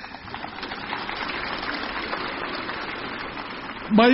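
A large crowd applauding, a steady patter of many hands clapping.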